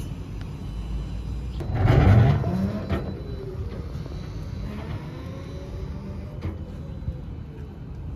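Electric tricycle setting off and driving away: a low rumble and a clunk about two seconds in, then quieter running with a faint whine that rises and falls.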